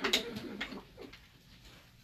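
A man's short throaty laugh, then a few faint gulps as he drinks water from a glass.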